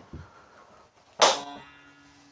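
A single sharp knock about a second in, with a ringing tone that fades over about a second and a half. It comes from the wooden block handle and wall panel of a fold-up bed being pulled.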